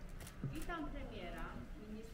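Indistinct chatter of several people talking at once, no one voice clear.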